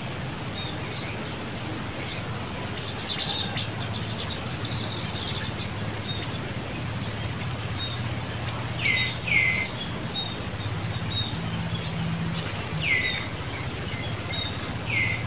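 Birds calling: short notes that slide down in pitch, two close together about nine seconds in and another near the end, among faint high chirps, over a steady low hum.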